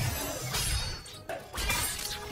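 Glass shattering in two loud crashes, one at the very start and another about a second and a half in, over a film music score.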